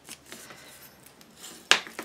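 Quiet handling of paper and cardstock on a craft table, with one sharp click near the end.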